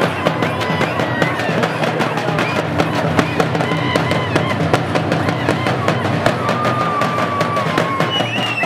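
Several large strap-carried drums beaten together in a fast, loud, driving rhythm, with crowd voices over the drumming.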